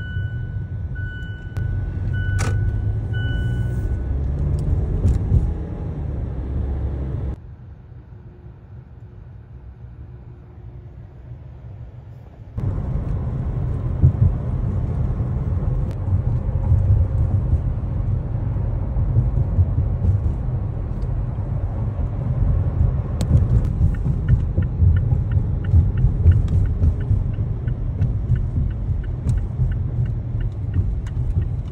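Car cabin noise while driving: a steady low rumble of engine and tyres that drops much quieter for about five seconds partway through. A few short high beeps sound in the first seconds.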